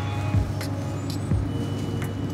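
A steady low hum with a few soft knocks and some faint held tones above it.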